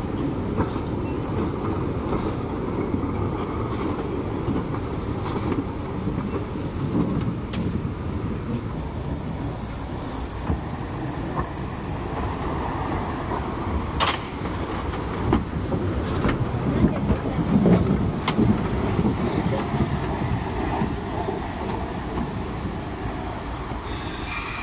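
Dübs-built B6 steam locomotive No. 2109 running slowly, a steady low rumble of steam and running gear with occasional sharp clicks. The sound grows louder for a few seconds past the middle.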